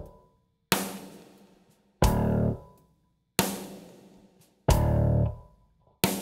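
Band music with electric guitar, bass and drums playing a stop-start intro. Full-band chords hit together about every 1.3 seconds, alternating between short held chords cut off sharply and struck chords left to ring out and fade.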